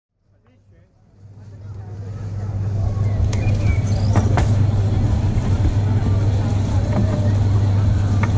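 Steady low motor hum with the chatter of a market crowd behind it, fading in over the first three seconds; a few sharp clicks stand out along the way.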